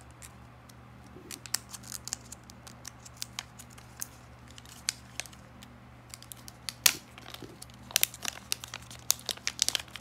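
Thin plastic packaging crinkling and crackling as it is handled and opened by hand, in irregular sharp crackles. The loudest crackle comes about seven seconds in, and a quick cluster follows near the end.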